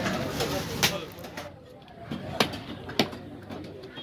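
Knife chopping through fish head on a wooden chopping block: three sharp chops, about a second in and then two more a little over half a second apart, with voices in the background during the first second.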